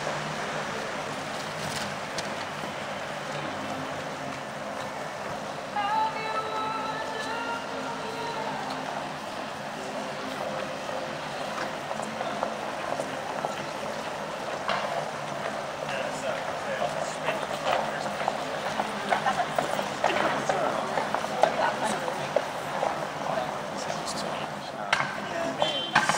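Busy city pavement ambience: passers-by talking, footsteps and light traffic, with scattered short clicks that grow busier in the second half. About six seconds in, a held pitched tone sounds for a couple of seconds.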